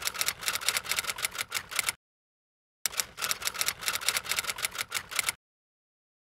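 Quick typewriter keystroke clicks, a typing sound effect for text appearing on screen. They come in two runs at about nine clicks a second, with a short silent gap about two seconds in, and stop a little before the end.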